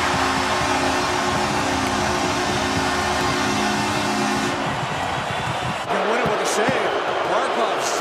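Home arena crowd cheering loudly after a shootout goal, with a steady low horn-like chord sounding over it for the first four and a half seconds. The cheering dies down at about six seconds, and voices take over.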